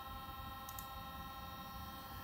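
Faint steady hum with several constant high tones and no distinct event.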